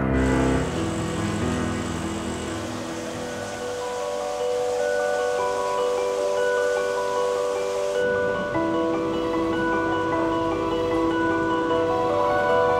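Background music: a slow run of held, bell-like notes stepping between pitches, low notes dying away in the first seconds and higher notes taking over.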